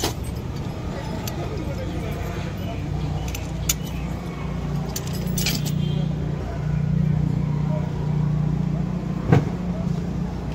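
Galvanised steel insulator hardware clinking as the strain clamp and fittings are handled and a split pin is pushed in, a few sharp metal clicks with the loudest near the end. A steady low hum runs underneath.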